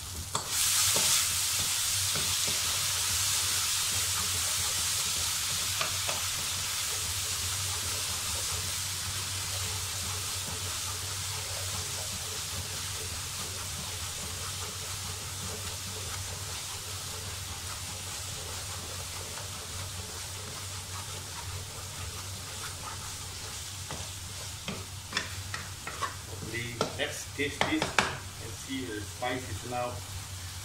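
Onions, tomato and sambal paste sizzling in a hot oiled wok as a wooden spatula stirs them; the sizzle jumps up loud about half a second in and slowly dies away. Near the end the spatula knocks and scrapes against the wok several times.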